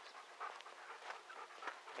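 Faint panting breaths with light rustles and ticks.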